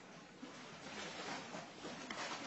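Faint background hiss with quiet, indistinct voices.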